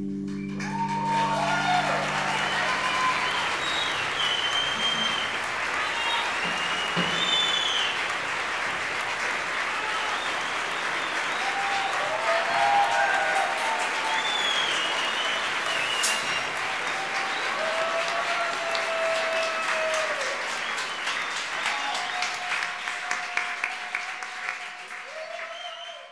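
Live audience applauding and cheering, with scattered whoops over the clapping. Near the end the clapping thins into separate claps and dies away.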